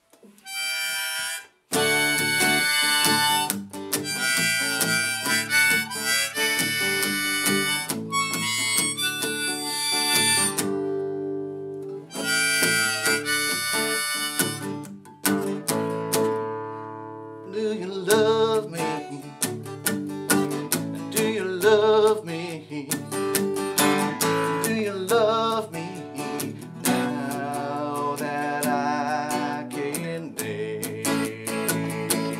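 Harmonica played over a strummed acoustic guitar: a short harmonica note about a second in, then long held chords and melody lines with the guitar underneath.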